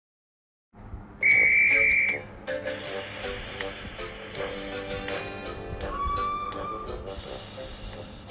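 Steam locomotive whistle blowing one short, high, loud blast about a second in, followed by steam hissing, with a second, lower whistle that rises slightly past the middle.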